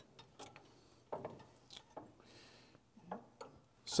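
Faint, scattered clicks and knocks of a coilover shock absorber's metal body and end fittings against the suspension mount as it is fitted by hand into the front shock mount.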